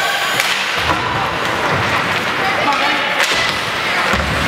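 Ice hockey play on a rink: skate blades scraping the ice and sticks clacking on the puck, with sharp cracks about half a second in and again a little after three seconds.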